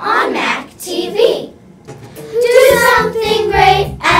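Children singing a song. A fuller musical accompaniment with a bass line comes in about two seconds in.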